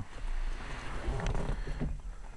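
Handling noise from a hand-held camera being swung around: a rustling hiss over a low rumble.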